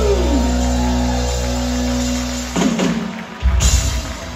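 Live rock band with electric guitars, bass and drums holding a final sustained chord, with a falling pitch glide near the start. The chord breaks off about two and a half seconds in, and a short loud closing hit from the band comes near the end.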